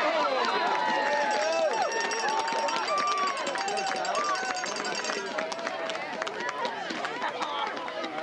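Many voices shouting and cheering at once at a lacrosse game, surging right at the start and thinning a little after about five seconds.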